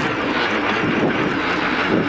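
Rally car engine running hard at speed on a gravel stage, with a dense rush of tyre and gravel noise, heard from inside the car.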